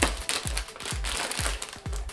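Crinkling and rustling of packaging as a cardboard subscription box is cut open and unpacked, with a sharp burst at the very start. Background music with a steady beat plays underneath.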